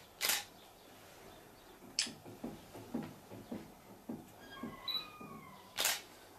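Two short, sharp clicks about five and a half seconds apart, with a single sharp tick and a run of soft low knocks between them, and faint high chirps near the end.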